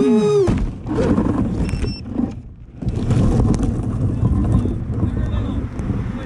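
Background music cuts out at the start with a slowing, falling-pitch tape-stop. Then rough wind noise buffets an action camera's microphone, with faint voices in the distance.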